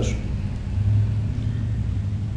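A low, steady rumble in the background, swelling a little about a second in, after the last syllable of a man's speech at the very start.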